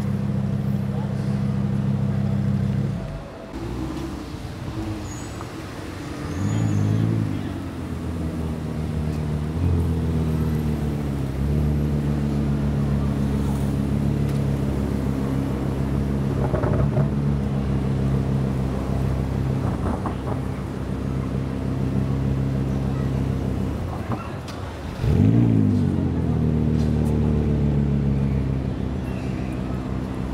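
Car engine running steadily under way. A few times its note dips and quickly climbs again, the biggest rise near the end, as with gear changes or a rev.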